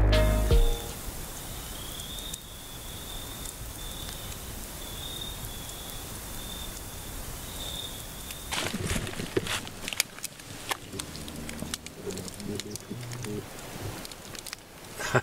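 Music stops within the first second, leaving outdoor night ambience: a steady hiss with a faint, high, wavering chorus in the background. From about eight seconds in come scattered sharp crackles and clicks.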